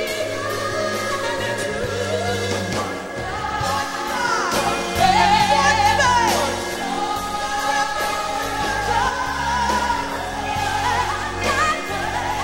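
Live vocal group singing in harmony with a band behind them. In the middle a woman's lead voice rises above the group in a run with wide vibrato.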